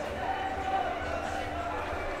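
Voices singing or chanting in long held notes, sounding through the stone street, over low, irregular thumps of footsteps.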